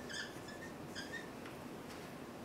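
Dry-erase marker squeaking on a whiteboard as it writes: two short high squeaks, one at the start and another about a second in.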